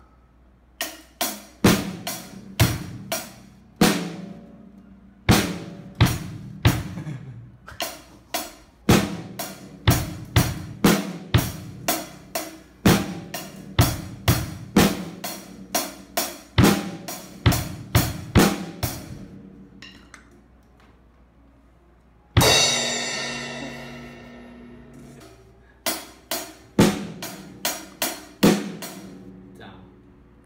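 Acoustic drum kit played with sticks: separate drum and cymbal strokes, about two a second, each ringing briefly. After a pause of about two seconds comes one cymbal crash that rings out for about three seconds, and then more strokes near the end.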